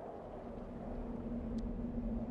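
Low steady rumble with a faint steady hum, growing slowly louder.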